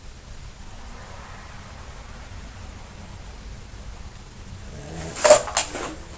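Faint steady background hiss, then a quick cluster of three or four sharp clicks about five seconds in.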